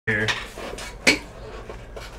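Small clinks and knocks of hard objects being handled, with one sharp, loud knock about a second in.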